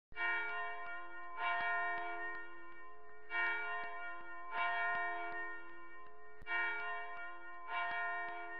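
Church bells tolling: about six strokes a second or two apart, each ringing on and fading before the next. The strikes differ a little in pitch, so more than one bell is rung.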